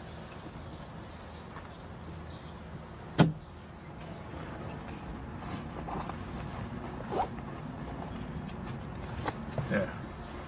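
Low, steady rumble of car-interior ambience with one sharp knock about three seconds in.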